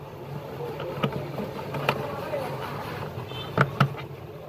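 Sharp clicks and knocks of hands handling plastic wiring connectors and cable clips inside a fridge, one about a second in, another near two seconds, and two loud ones close together near the end, over a steady low hum.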